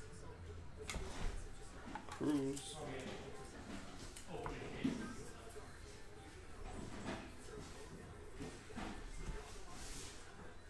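Baseball cards being flipped through by hand, the cards sliding and clicking against each other in short rustles. A brief murmured voice comes twice.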